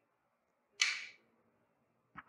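A single sharp click of a carom billiards shot, fading quickly in the room, about a second in.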